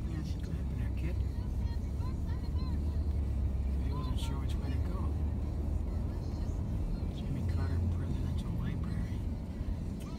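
Steady low road and engine rumble heard inside a vehicle's cabin while driving on a freeway, with faint, indistinct voices over it.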